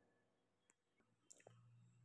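Near silence: room tone, with a couple of faint clicks about a second and a half in.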